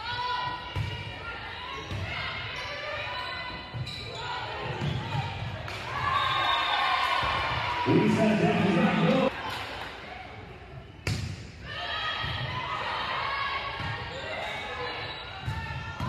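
Spectators' voices in a gym, with a volleyball bouncing on the hardwood court and a few sharp hits. The loudest hits come about a second in, about four seconds in, and about eleven seconds in.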